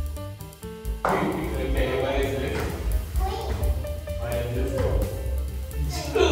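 Background music with a bass line and a beat. About a second in, the noisy chatter and calls of a room of young children come in over it.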